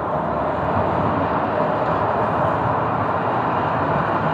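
A Sheffield Supertram tram running past close by on its street track, a loud, steady noise of the passing tram.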